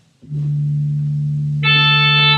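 Church organ music starting: a single low note begins a moment in and is held steady, and a fuller chord of higher sustained notes joins about a second and a half in.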